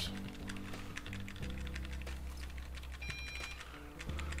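Rapid, repeated key presses on a cheap Dell USB keyboard, spamming the Delete key to get into the BIOS setup while the machine boots. Background music with sustained low chords plays underneath.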